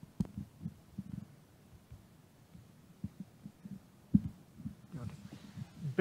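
Handheld microphone handling noise: irregular low thumps and bumps as the mic is gripped and moved, the sharpest about four seconds in.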